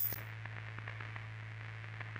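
Intro sound design: a steady low electrical hum with faint, scattered crackles, opening with a short bright hiss as the title flashes.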